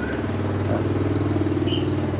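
An engine idling steadily, a low, even-pitched running sound with a fast regular pulse.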